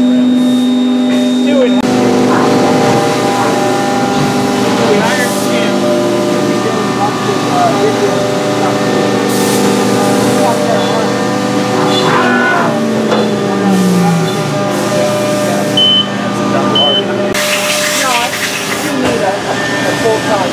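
Machine-shop noise from CNC milling machines: several steady whining tones at once, one of them falling in pitch over about a second and a half midway. Twice there are bursts of hissing spray or air, and indistinct voices are heard underneath.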